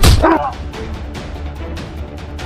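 A sharp hit with a short pained shout right at the start, then steady background music with sustained tones.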